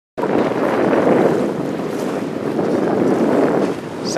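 Steady noise of wind on the microphone and choppy water around a boat, with no tones or distinct splashes.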